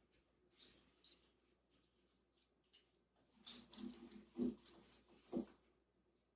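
Faint rustling and scraping of an artificial wreath's leaves and burlap as it is handled and hung on a window, busier in the second half, with two soft knocks about a second apart near the end.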